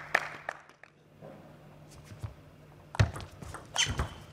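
Table tennis ball on bat and table: a few light clicks at the start, then a quiet stretch while the server sets, then the serve and the opening strokes of the rally as sharp knocks about three seconds in and again near the end. A little applause fades out in the first half second.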